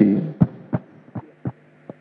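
A man's voice through a microphone trails off, then about five short dull thumps follow, spaced roughly a third of a second apart, over a faint steady electrical hum.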